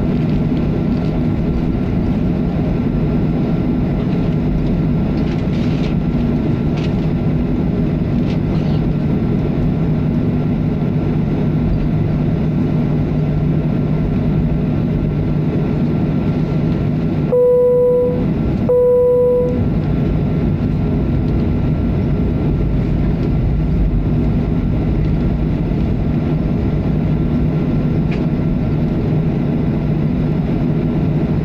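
Cabin noise of a Boeing 737-500 taxiing: the steady hum of its CFM56 engines at taxi power and the cabin air. About 17 seconds in, two loud, even beeps of about a second each at the same pitch cut through, and the background drops out while they sound.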